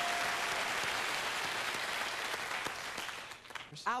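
Game-show studio audience applauding after a correct letter call, dying away about three and a half seconds in. A steady electronic tone carries over for the first half-second.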